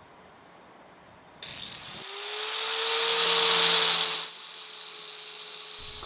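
Faint outdoor hiss, then from about a second and a half in a handheld electric power tool working metal. Its motor whines up in pitch, the cutting noise is loudest three to four seconds in, then it drops back just after four seconds in to the motor running on steadily.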